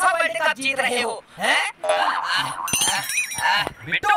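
High-pitched, sped-up cartoon character voices crying out and wailing without clear words, with a brief high ringing sound effect about three seconds in.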